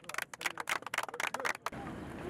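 A small group clapping their hands: a run of sharp, irregular claps that cuts off suddenly near the end, leaving a steady outdoor hiss.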